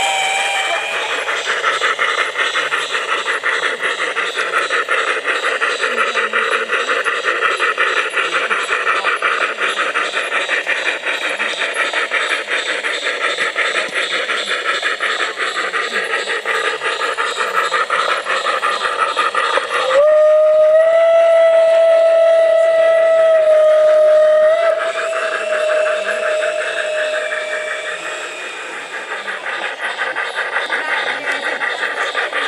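LGB garden-scale model trains running on outdoor track with a fast, continuous rattle of wheels and motor. About two-thirds of the way through, a locomotive's sound-module whistle blows one long steady note for about eight seconds, with a higher note joining near its end.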